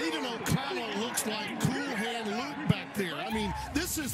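Men's voices, with no clear words.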